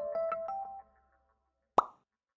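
Closing music jingle: a quick run of short, bright, ringing notes that stops a little under a second in. After a second of silence comes a single short pop-like sound effect near the end.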